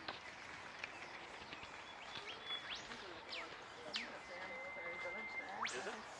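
Faint distant chatter of people, with several quick sharp high chirps scattered through and one held thin whistle note a little after four seconds in.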